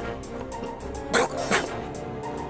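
Background film music with two short, loud dog barks a little over a second in, the second following close on the first.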